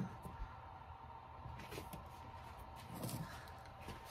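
Earthquake Tremor X124 subwoofer in free air playing the bottom of a 10 Hz to 40 Hz sweep at rated power. The tone is too low to be heard much, so little more than a faint steady hum and a few soft ticks come through.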